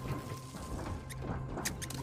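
A quiet lull in the soundtrack: faint rustling ambience over a low steady drone, with a few soft clicks about a second in and near the end.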